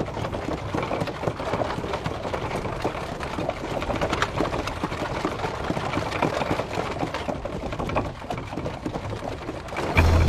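A horse's hooves and a wooden-wheeled cart clattering over a dirt road: a dense, steady run of knocks and rattles that eases briefly about eight seconds in.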